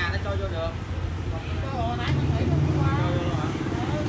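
Small motorbike engine idling with a steady low hum, getting louder and fuller about two seconds in.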